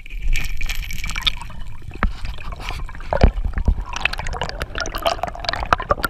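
Underwater water noise heard through an action camera: a low rumble and gurgling as a diver hauls an octopus out of its hole and swims upward, with scattered clicks and knocks and a heavier knock about three seconds in.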